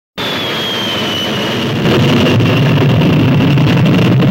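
Jet airliner flying low overhead: a loud jet rumble with a high whine that slowly falls in pitch, the rumble growing louder about two seconds in.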